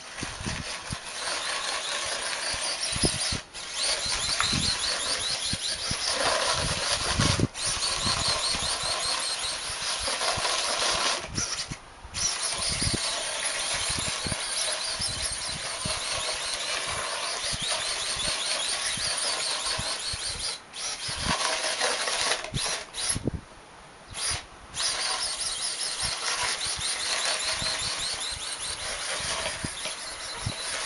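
A small sumo robot's electric gear motors whining as it drives and pushes snow across paving tiles, cutting out briefly several times.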